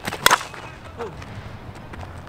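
Miken Freak 23KP two-piece composite slowpitch softball bat hitting a pitched 52/300 softball: one sharp crack about a quarter second in. The bat is new, still being broken in, and the hitter finds the sound of the contact nice.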